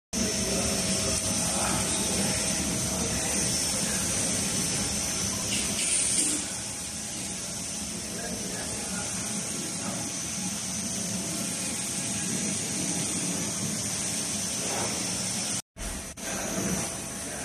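Large-format roll-to-roll UV printer running: a steady machine hum with a constant high hiss, swelling briefly about six seconds in.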